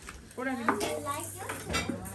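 Cutlery clicking and tapping against dishes and a cutting board as food is prepared, a knife cutting pineapple among them, with a few sharp clicks and quiet voices underneath.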